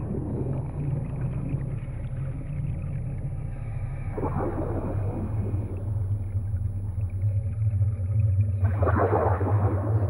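Scuba divers exhaling through their regulators: two bursts of bubbling, about four seconds in and again near the end, over a steady low underwater rumble.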